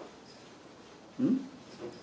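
A man's short "hmm" into a phone, about a second in, its pitch rising then falling, followed by a fainter murmur near the end.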